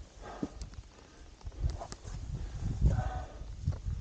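Climber scrambling up rock: heavy breathing in gusts, with wind buffeting the microphone and a few light knocks and scrapes of hands and boots on the rock.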